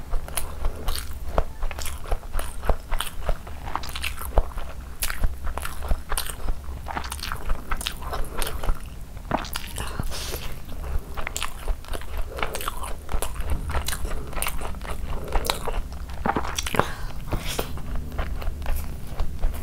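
Close-miked chewing of a mouthful of chicken biryani rice eaten by hand: a dense, irregular run of wet mouth clicks and lip smacks. A steady low hum lies underneath.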